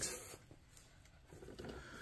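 Faint handling: a glass jar of jam lifted out of its cardboard case and turned in the hand, with light rubbing of glass and cardboard that grows a little louder in the second half.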